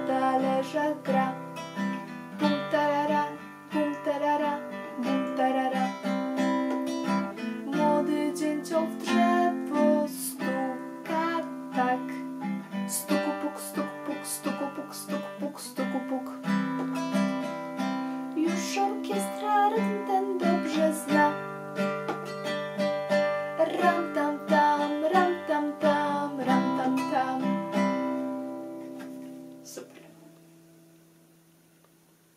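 Acoustic guitar strummed in a steady rhythm, with a woman singing a children's song over it. The playing dies away near the end.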